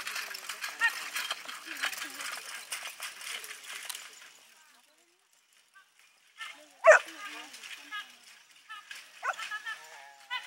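People talking, with the sound dropping away almost completely for a moment past the middle. Then comes one short, sharp, loud yelp, followed by more voices.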